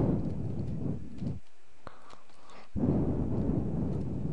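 Pen or stylus writing on a drawing tablet, carried to the microphone as a low, scratchy rumble in two stretches, with a single small click between them.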